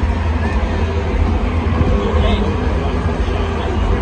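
Large stadium crowd's loud, steady din of many voices, with a deep low rumble underneath.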